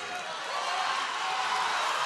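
Arena crowd cheering and shouting, growing louder.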